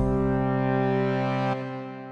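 Closing chord of a TV channel's ident jingle: one held, steady chord that starts fading out about one and a half seconds in.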